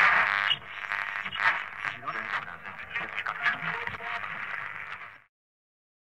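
A voice with music, thin and tinny as if coming through an old radio, cutting off suddenly about five seconds in.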